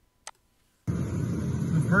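A single mouse click, then a moment later the played video's sound cuts in abruptly: steady outdoor noise with the low rumble of a vehicle, and a voice begins speaking near the end.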